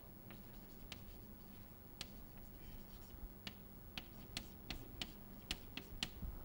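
Chalk writing on a blackboard: a series of faint, sharp taps and clicks as the chalk strikes and drags across the board, coming more quickly in the second half.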